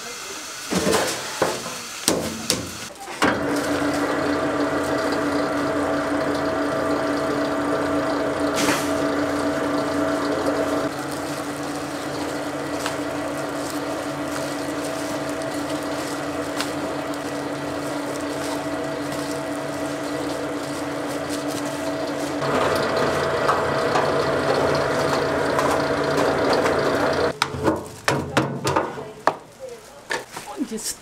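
Electric rice-flour mill running, grinding soaked rice into flour: a steady machine hum with fixed tones that starts about three seconds in, changes pitch around eleven and twenty-two seconds, and stops shortly before the end. A few knocks come before it starts.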